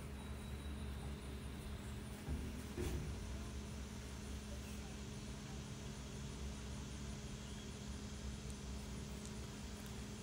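Quiet steady background hum and faint hiss, with two soft brief sounds about two and three seconds in.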